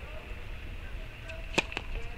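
Tennis serve: the racket strikes the ball with a single sharp pock about one and a half seconds in, followed by a fainter click just after.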